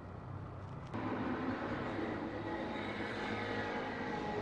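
Steady mechanical whir and hiss with several faint steady tones, starting suddenly about a second in.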